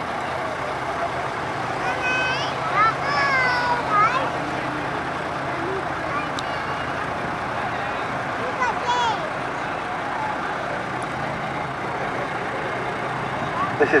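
Vintage lorries' diesel engines running slowly, a steady low hum under open-air background noise, with a few snatches of nearby voices.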